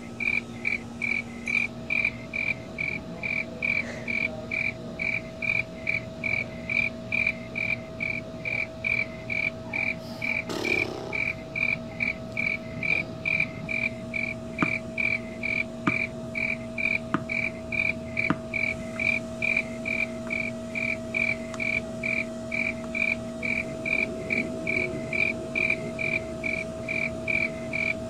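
Cricket chirping, a steady run of short high chirps about twice a second, over a faint steady hum, with a brief rustle about ten seconds in.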